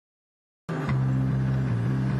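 A car engine running steadily as the car drives along: a low, even drone that cuts in suddenly under a second in.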